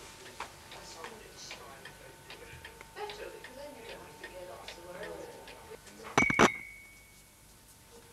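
A wall clock ticking faintly under muffled background conversation. About six seconds in comes a sharp clatter of clicks with a brief ringing ding that dies away within about a second.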